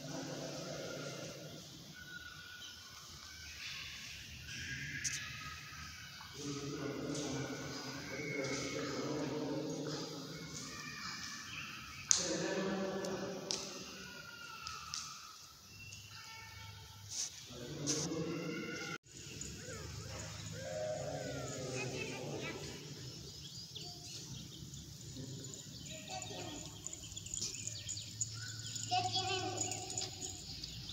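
Faint, indistinct voices of people talking in the background, with a few sharp knocks, the loudest about twelve seconds in. After a sudden cut about two-thirds of the way through, quieter faint voices continue.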